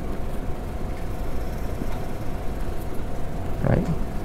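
Steady low rumble and hum of room noise, with one short low sound a little before the end.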